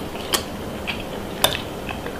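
Close-miked eating sounds: two sharp clicks about a second apart, with fainter ticks between.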